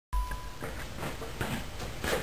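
A short steady high beep at the very start, then a low hum with a few faint soft knocks.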